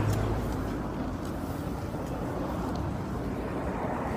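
Steady outdoor street rumble and hiss picked up by a handheld phone microphone, with a low hum that fades about half a second in.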